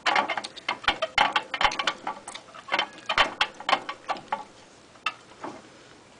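Irregular clicks and clatters of a plastic hamster wheel as hamsters clamber into and around it: a dense run of uneven clicks for about four seconds, then two more single clicks.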